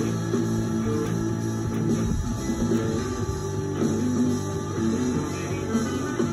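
Telecaster-style electric guitar playing a solo: a run of held, bending single notes.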